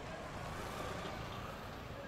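Steady, low street traffic noise from motorcycles and minibus taxis.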